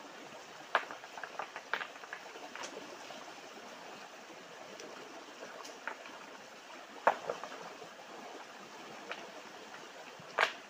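Shallow rocky stream rushing steadily over stones, with scattered sharp splashes and knocks as hands work in the water and shift rocks on the streambed; a cluster of them about a second in and the loudest about seven seconds in.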